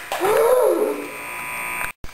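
A boy's high wordless vocal cry that rises and falls, trailing into a lower held sound. The sound cuts off abruptly just before the end.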